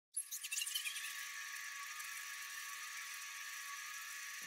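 A high, airy shimmer sound effect for a sparkling logo reveal. Bright twinkles are scattered through the first second, then a steady high shimmer holds.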